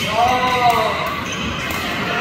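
A player's single drawn-out vocal call, under a second long, rising then falling in pitch, over the sharp racket-and-shuttlecock hits and footwork of a badminton doubles rally.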